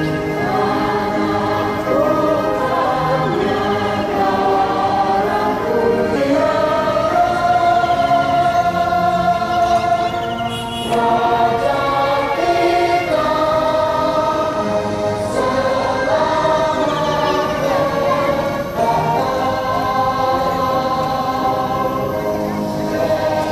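A group of voices singing a song together in unison, on long held notes, with a short break about ten and a half seconds in.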